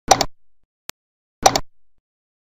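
Computer mouse-click sound effects, two quick double clicks about a second and a half apart, each with a short fading tail, timed to a cursor pressing on-screen subscribe and like buttons.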